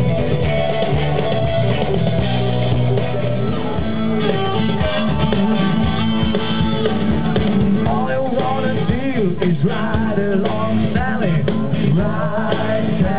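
Blues band playing live: electric guitars, bass guitar and drum kit, with a wavering, pitch-bending lead line over the top in the second half.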